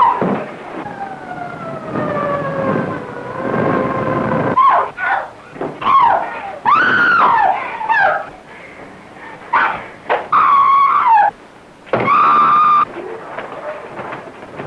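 High-pitched wailing cries over a hissy old film soundtrack. A long cry slides slowly downward, then shorter cries rise and fall, and two high cries are held for about a second each near the end.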